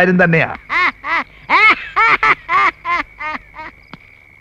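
A man laughing: a run of about a dozen short, pitched "ha" bursts in quick succession, growing fainter toward the end.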